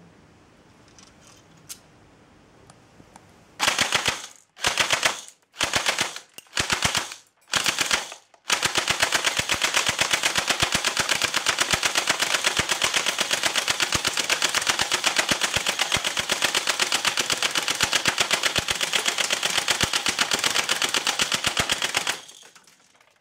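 Homemade airsoft turret built around an electric G36 gearbox, firing 6 mm BBs on full auto. It fires five short bursts about four seconds in, then one long continuous string of rapid shots that cuts off suddenly at the end.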